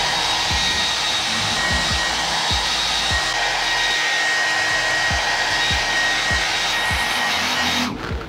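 Handheld Amstar hair dryer blowing steadily with a thin high whistle, heating the scooter's plastic side panel and 3M adhesive tape so the protector bonds. It cuts off suddenly at the end.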